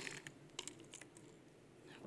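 Faint, scattered light clicks and rattles of cardboard jigsaw puzzle pieces shifting in their box as the box is handled, several in the first second, then quieter.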